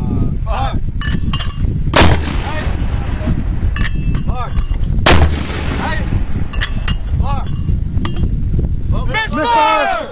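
Mortar firing twice: two loud, sharp bangs about three seconds apart over a steady low rumble.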